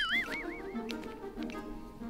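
Quiet background music. It opens with a short, warbling, whistle-like sound effect that wavers up and down in pitch for under a second and then fades.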